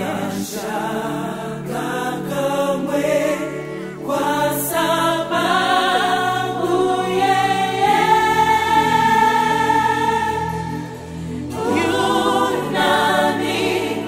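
A gospel choir singing in harmony with electronic keyboard accompaniment, holding one long chord a little past the middle.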